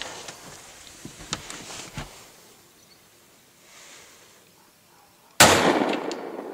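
A single gunshot about five seconds in, sudden and loud with a short echoing tail. Before it there are only faint rustles and clicks.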